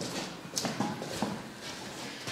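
Footsteps on a hard floor: four or five steps about half a second apart, a person walking at a normal pace.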